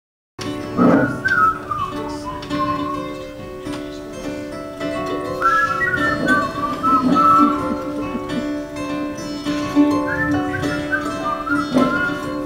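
A whistled melody, played as the song's intro in three wavering phrases, over live accompaniment of acoustic guitars and keyboard holding steady notes.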